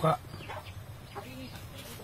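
A chicken clucking faintly a few short times, after a man's voice trails off at the very start.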